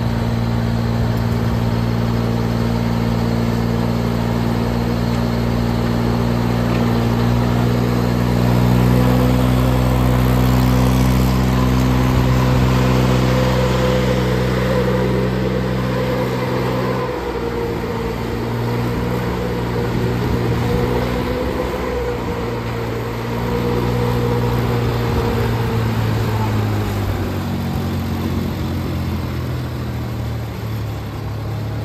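Shoshin self-propelled airblast sprayer running, its Mitsubishi three-cylinder diesel engine driving the machine and the rear blower fan, which whines steadily over the engine while blowing out mist. The engine note dips about halfway through and again near the end as the machine manoeuvres.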